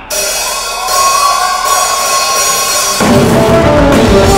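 Live rock band opening a song: a cymbal wash and a held electric guitar note ring out, then about three seconds in the full band comes in with drums and bass.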